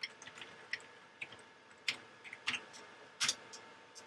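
Computer keyboard keys being pressed one at a time, about a dozen irregular clicks as a password is typed, with a louder key press about three seconds in.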